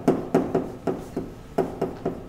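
Chalk writing on a blackboard: a quick run of sharp taps, about four a second, each with a short ring from the board.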